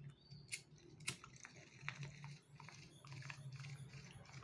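Faint, irregular small clicks and rustles from a hand handling a small object close to an earphone microphone, over a low steady hum.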